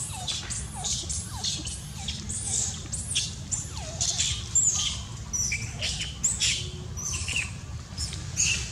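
Baby long-tailed macaque giving a run of short, high-pitched squeaky calls, about two a second, each dropping in pitch, over a steady low rumble.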